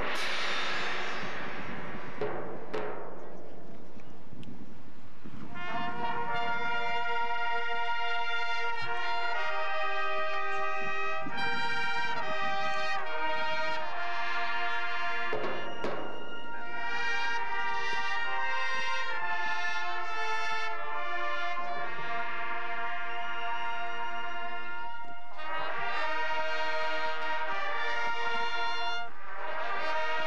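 High school marching band playing on the field. A percussion crash rings away at the start, then the brass section plays sustained chords that change step by step. A second crash comes about halfway through.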